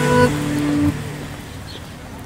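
Closing notes of a TV channel ident jingle: a couple of short held notes over a sustained low tone, fading out.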